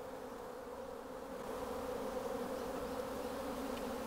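A mass of honey bees buzzing in a steady hum as a package of bees is poured out into a hive, swelling slightly about halfway through.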